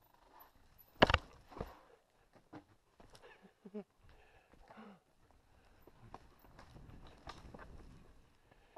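Mountain bike riding down a dirt singletrack: a sharp clatter about a second in as the bike hits a bump, then scattered knocks and rattles, with a low rumble of tyres on dirt growing over the last few seconds.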